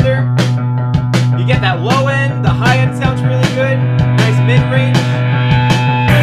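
Guitar-led rock music with drums, played back through a pair of wirelessly linked Rockville RPG12BT V2 12-inch powered PA speakers and streamed from a phone over Bluetooth.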